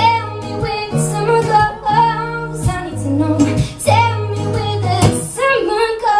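A young woman singing a slow, melodic song, accompanied by guitar playing held low notes under her voice.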